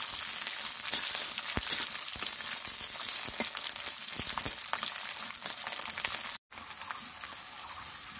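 Capsicum and onion pieces sizzling in hot mustard oil in an iron kadai, lightly frying, with a metal slotted spatula scraping and tapping the pan now and then as they are stirred. The sound cuts out for a moment about six and a half seconds in, then the sizzle resumes a little quieter.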